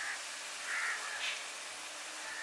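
Water poured from a stainless steel jug into a steel tumbler, faint and soft, with a few brief light trickling sounds.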